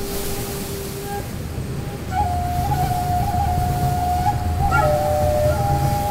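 Native American flute music: a held tone fades out about a second in, then from about two seconds in the flute plays slow, held notes with small ornaments, stepping down and back up, over a low drone.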